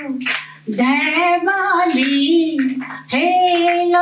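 An elderly woman singing into a microphone, holding long notes. Her voice breaks off briefly for a breath about three quarters of a second in and again just after three seconds.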